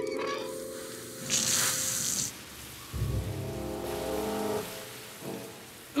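Cartoon background score with a sudden hiss lasting about a second, beginning about a second in, as a pipe valve is turned open and sprays out; a low rumble follows in the middle with the music.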